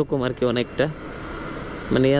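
A man talking over motorcycle riding noise. Midway there is about a second without speech where only steady wind and engine noise from the moving Yamaha MT-15, a 155 cc single, is heard.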